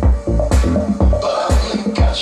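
House music with a steady four-on-the-floor kick, about two beats a second, mixed live on a DJ turntable with a control vinyl.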